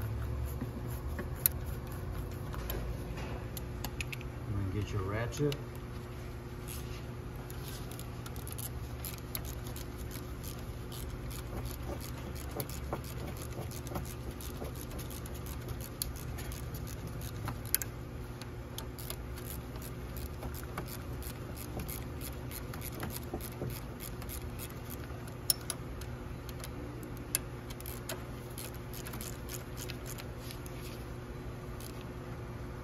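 Ratchet wrench clicking in short, irregular runs with a few sharper metal knocks, as the high-pressure fuel pump's mounting bolts are tightened a little at a time, side to side. A steady low hum lies underneath.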